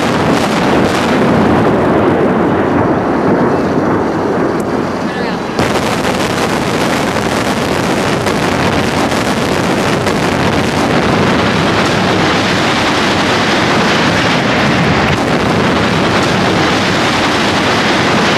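Implosion of the Sands Hotel tower: the long, loud rumble of the demolished building collapsing. It suddenly turns brighter and fuller about five and a half seconds in.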